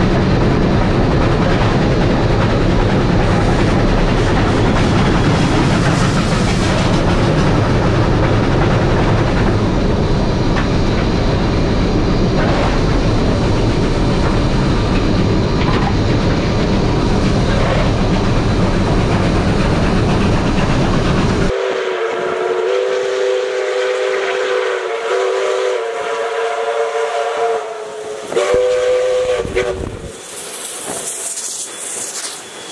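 Steam locomotive cab noise at speed: a loud, steady rumble and clatter of the running engine and wheels on the track. About two-thirds of the way through it cuts sharply to steam whistles sounding a chord of several tones in a few long blasts.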